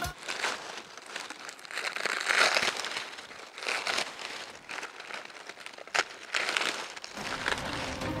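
Dry corn husks rustling and crackling in uneven bursts as they are torn open and stripped from the ears by hand, with one sharp snap about six seconds in.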